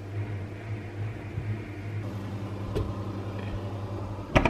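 Steady low electrical hum of a running kitchen appliance, with a faint tick about three-quarters of the way through.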